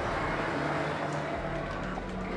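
Steady low rumble of background noise with a faint steady hum, and no distinct events.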